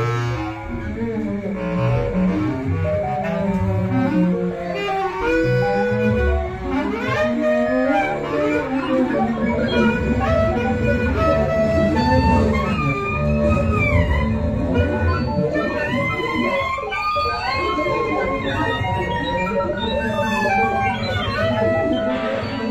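Live jazz ensemble playing: double bass in front, with soprano and baritone saxophones and trombone weaving dense, overlapping lines that slide up and down in pitch.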